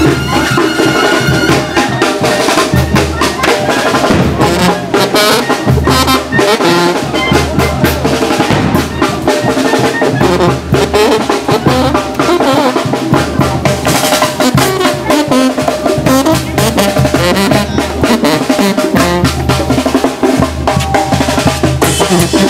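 Mexican brass band (banda de viento) playing loudly: brass with sousaphone bass over a steady beat of snare drum, bass drum and crash cymbals.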